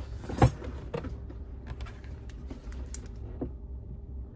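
Handling noises from objects being picked up and moved: one loud knock about half a second in, then scattered light clicks and rattles.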